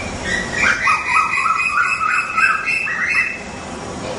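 Songbird calling: a quick run of short chirping notes stepping back and forth between a lower and a higher pitch for about three seconds, then stopping, over a steady low background rumble.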